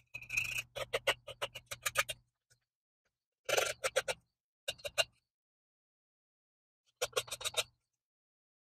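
A screwdriver tip run along masking tape at the edge of an engine block deck, making quick ticking scratches, about eight to ten a second, in four short bursts with pauses between.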